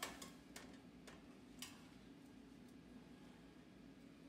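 Faint metal clicks as a baking sheet is slid out over an oven's wire rack, about five in the first second and a half. Otherwise near silence with a low steady hum.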